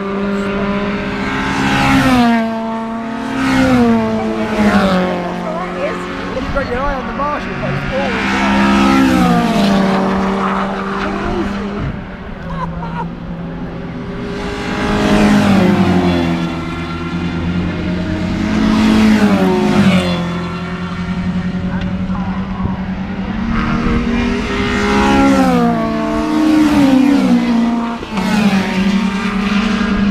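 Racing saloon car engines at full throttle on the circuit, the engine note climbing and then dropping again and again, with cars passing close by.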